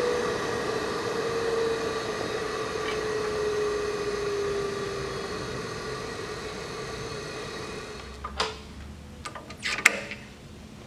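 Mechammer MarkII planishing hammer coasting down after the hammering stops: a steady hum that slides slowly lower in pitch and fades out over about eight seconds. A few sharp knocks come near the end as the panel and dies are handled.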